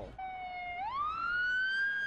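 Police car siren wailing: a steady low tone that sweeps up in pitch just under a second in and holds at the top.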